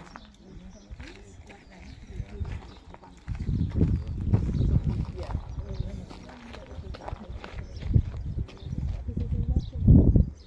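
Indistinct talk from people standing nearby, with a stretch of low rumbling through the middle and a sharp knock near the end.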